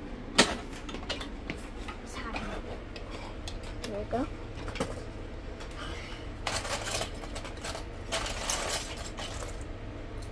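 Plastic Lego bricks clicking and knocking as they are handled on a plastic toy workbench. There is one sharp click about half a second in, and later two longer rattling bursts.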